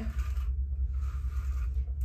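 Wet Brush hairbrush dragged through long, soaking-wet hair: two soft brushing strokes, the second longer, over a steady low hum.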